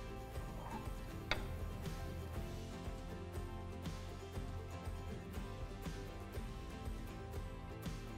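Quiet background music, with a faint click about a second in.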